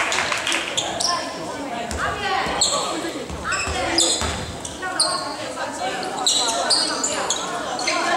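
A basketball bouncing on a hardwood gym floor as it is dribbled, with short high squeaks and voices echoing in a large hall.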